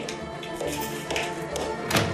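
High-heeled shoes stepping on a hard floor, a few sharp taps with the last one loudest near the end, over background music with held tones.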